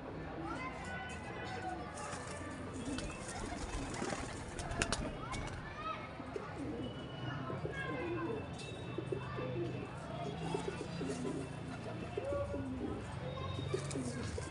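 Pigeons cooing again and again, joined by many short, higher calls.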